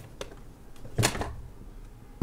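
Handling noise: a light click shortly after the start, then a single louder knock about a second in, like a hard object being bumped or set down.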